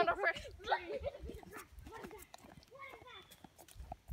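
Excited children's voices that fade after the first couple of seconds, with scattered short knocks and rustles of hurried steps on the leaf-covered trail.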